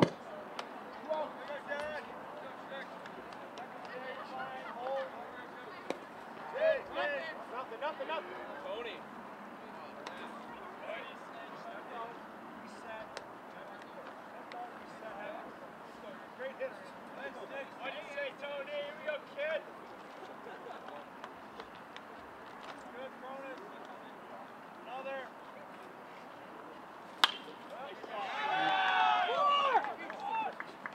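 Faint scattered voices of players and spectators calling around a baseball field. About 27 seconds in comes a single sharp crack of a bat hitting the ball, followed by several voices shouting louder as the play runs.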